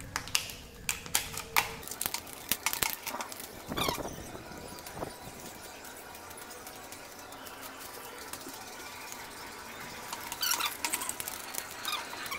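Handling noise from cut plastic bottles and wire being worked by hand: scattered clicks and crinkles in the first couple of seconds and again near the end, with a quieter stretch in between.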